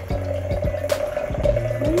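Warm apple cider poured in a thin stream from a stainless steel saucepan into a glass mason jar, splashing and trickling into the liquid. A steady held tone runs under it.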